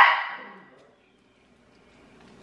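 A single dog bark right at the start, dying away within about half a second, then near silence.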